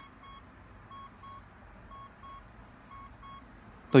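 Mitsubishi Pajero's dashboard warning chime sounding as the ignition is switched on: a short double beep, repeating about once a second, four times.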